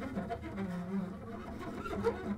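Double bass played with the bow: quiet held low notes, dipping slightly in pitch about halfway through.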